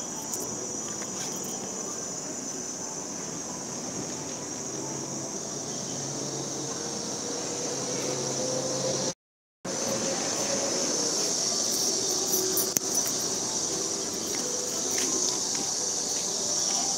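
Steady, high-pitched drone of insects in a chorus. The audio cuts out completely for about half a second around nine seconds in.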